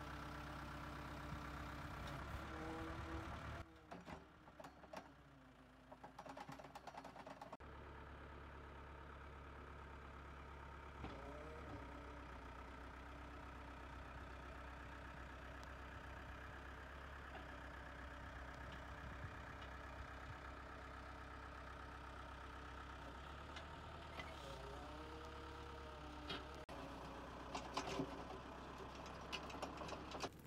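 Caterpillar backhoe loader's turbocharged diesel engine running steadily and faintly, with a quieter patch about four to seven seconds in.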